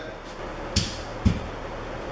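Two short, dull knocks about half a second apart, the first with a sharper click on top.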